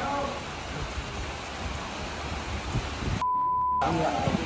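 Steady rain hiss, then about three seconds in a half-second 1 kHz censor bleep that blanks out all other sound.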